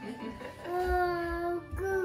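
A toddler crying: one long wail held on a steady pitch about a second in, then a second, shorter wail near the end, with background music underneath.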